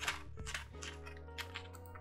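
Scissors snipping through printer paper, a quick series of short cuts, over soft background music.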